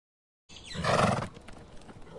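A horse vocalising: one short, loud call about half a second in, lasting under a second, then quieter background sound.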